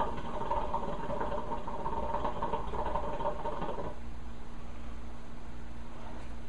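Hookah water bubbling steadily as smoke is drawn through the hose in one long pull, stopping about four seconds in.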